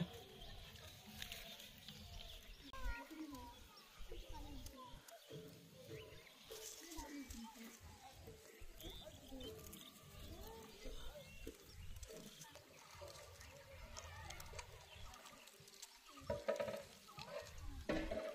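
Faint voices talking in the background, with a few small clicks and knocks and a low rumble throughout.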